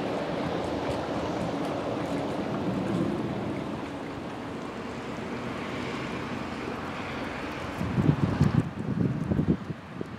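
Steady rush of a swollen, muddy river flowing fast. About eight seconds in, wind buffets the microphone in irregular low gusts.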